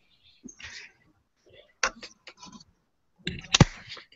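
Scattered sharp clicks, the loudest near the end, with brief faint snatches of voice, picked up by participants' open microphones on a video call.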